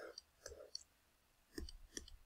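Faint clicking of a computer pointing device, with a few clicks in the first second and two more near the end.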